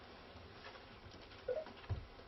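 Faint room noise in a pause in speech, with a short soft sound about one and a half seconds in and a brief low knock just before the end.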